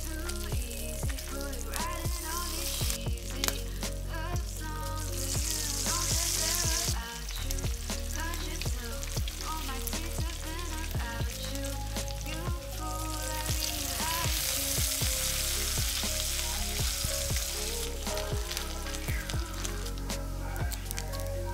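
Bacon sizzling in a cast iron skillet, a steady hiss dotted with small fat pops that swells louder twice, under background music with a steady bass line.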